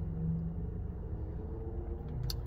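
Low, steady rumble of a car idling, heard from inside the cabin.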